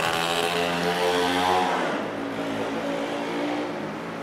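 A steady engine hum with many evenly spaced tones, loudest at the start and fading away over about two seconds.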